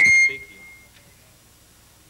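A short, loud electronic beep: one steady high tone that breaks into the speech, holds for about a third of a second, then fades out by about a second in, leaving only a faint hum.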